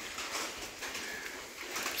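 Faint, steady background noise with no distinct sound standing out.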